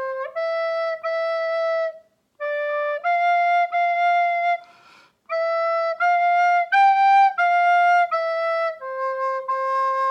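A plastic soprano recorder plays a slow, simple melody in short stepwise phrases, with pauses and a breath taken about five seconds in. It ends on a long held low note near the end.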